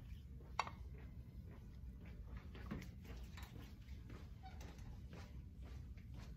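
Faint, soft rubbing of hands rolling a thin coil of soft clay on a pottery wheel head, over a low steady hum, with one sharp tick about half a second in.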